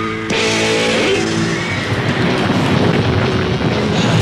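Loud rock music with electric guitar and drums, cutting in abruptly just after the start.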